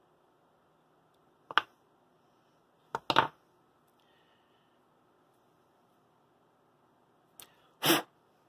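A few brief clicks and knocks of small tools and parts being handled and set down on a workbench. A light click comes about a second and a half in, then a double tap around three seconds in, and the loudest knock comes near the end.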